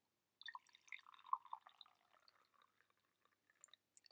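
Tea poured from a ceramic teapot into a ceramic mug: a faint trickling stream that starts about half a second in and stops shortly before the end.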